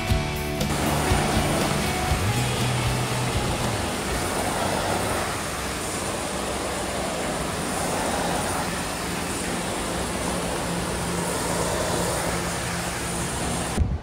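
Brief guitar music ending about a second in, then floor-cleaning machinery running steadily, a loud even noise with a faint high whine on top.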